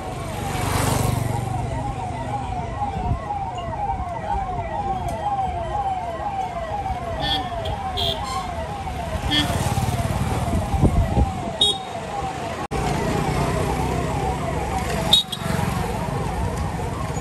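Police vehicle siren on a fast yelp: a rising sweep repeated about twice a second, heard over street traffic.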